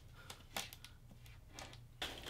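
A few faint clicks and scrapes from handling a styrofoam packing box.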